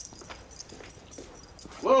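Faint shuffling and footsteps, then near the end a man lets out a sudden, loud yell of "Whoa!".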